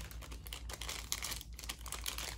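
Plastic packaging crinkling and crackling in irregular small clicks as a bagged bodypack receiver is handled and lifted out of a clear plastic tray.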